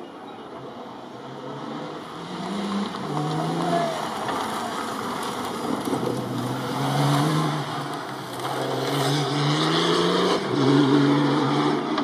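Engines of off-road rally side-by-side buggies revving hard under load on a dirt climb, the pitch rising and dropping again and again with throttle and gear changes, getting louder toward the end.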